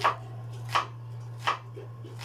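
A cleaver chopping tomatoes: three sharp strikes about three-quarters of a second apart, over a steady low hum.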